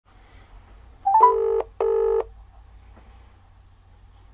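British telephone ringing tone heard down the line: a quick rising three-note blip as the call connects, then one double ring, two short buzzes with a brief gap between them.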